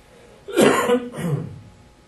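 A man coughing twice: a loud cough about half a second in, then a second, weaker one just after.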